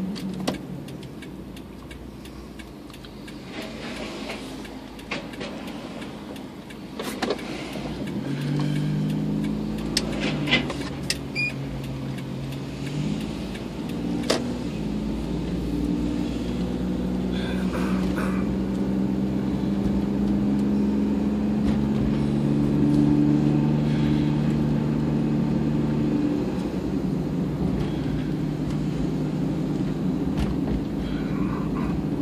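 Car engine and road noise heard from inside the cabin as the car drives along. The engine note rises from about eight seconds in, dips once near thirteen seconds, climbs again and then holds steady, with a few sharp clicks in the middle of the stretch.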